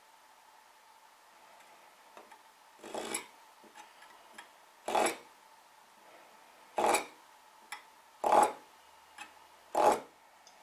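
Marking knife drawn along a steel rule, scoring a line in a wooden board: five short scraping strokes, one every one and a half to two seconds, starting about three seconds in. Each pass deepens the knife line a little.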